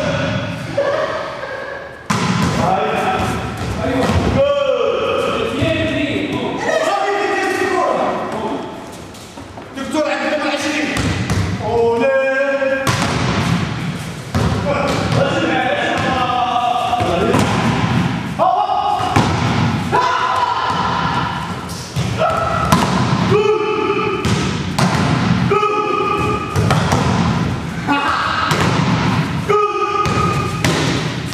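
Repeated dull thuds of judoka landing on tatami mats, with voices talking throughout.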